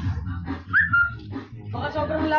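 A short high-pitched cry about a second in, rising and then held briefly, over background music.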